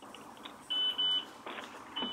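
Telephone ringing: a high electronic double beep about two-thirds of a second in, with the next double beep starting near the end.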